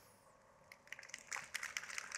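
Near silence, then faint, scattered audience applause that starts about a second in and builds slightly.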